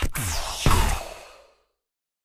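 The closing sting of a logo-animation jingle: a whooshing sweep, then a final hit about two-thirds of a second in that rings out and fades away within about a second and a half.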